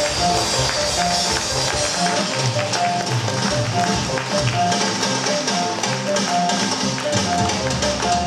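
A live instrumental ensemble of ocarina, cello, piano and drum kit playing an upbeat piece. The melody runs in short repeated notes over a moving bass line and a steady drum beat.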